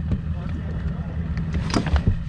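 Knocks and clatter of hands working in a bass boat's rear-deck compartment, with the loudest clunk near the end, over a steady low hum.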